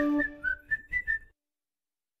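A short run of about five quick whistled notes, the tail of the edited-in background music, cutting off about a second in.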